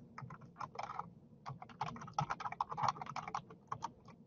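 Computer keyboard being typed on: quick runs of key clicks, with a short pause about a second in.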